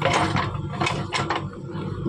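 JCB backhoe loader's diesel engine running under load as the bucket digs into rock rubble. Stones scrape and knock against the steel bucket, loudest at the start and again about a second in.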